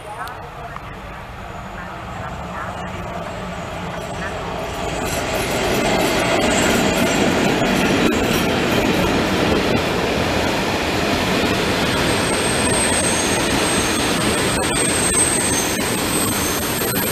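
Electric-hauled passenger train running past close by, its wheels-on-rail noise growing over the first five seconds, then holding steady and loud. A thin, high wheel squeal sets in during the last few seconds.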